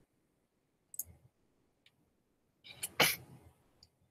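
A few short, sharp clicks at a computer, spaced apart with quiet between them; the loudest comes about three seconds in.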